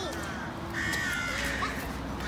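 A crow cawing once, about a second in.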